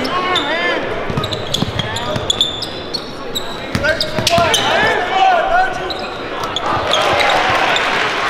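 Basketball dribbled on a hardwood court in repeated thuds, with sneakers squeaking on the floor and crowd voices echoing in a large gym.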